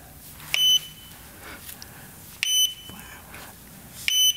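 Two short, high electronic beeps about two seconds apart, each starting with a click, as the off-camera flash is fired through the Godox X3 trigger and signals that it is ready again.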